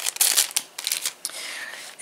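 Clear plastic bag of small fold-over jewelry tag labels crinkling as it is handled, busiest in the first second and dying down to a faint rustle near the end.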